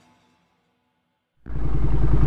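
The tail of the music fades into near silence, then about one and a half seconds in a loud, steady low rumble starts abruptly. The rumble is a 2017 Triumph Street Twin's 900 cc parallel-twin engine idling through a Termignoni 2-into-1 exhaust, with a regular pulsing beat.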